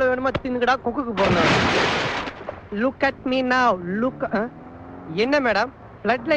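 Film dialogue: voices talking, broken about a second in by a loud rushing blast of noise that lasts about a second, like a burst or explosion sound effect.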